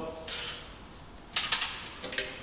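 Stanley knife blade drawn along pasted wallpaper at the ceiling line: a short rasping scrape, then a few sharp scratchy clicks as the blade cuts through.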